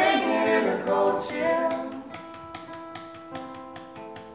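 Small acoustic folk group playing: voices singing over guitars and accordion for about the first two seconds. The singing then stops while a chord, likely the accordion's, is held steady under a regular beat of light clicks.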